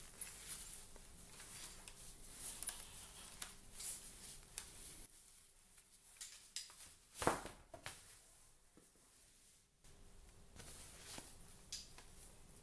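Faint handling of a folded umbrella: light rustles of the canopy fabric and small taps from its fittings as it is turned in the hand, with one louder sharp tap about seven seconds in.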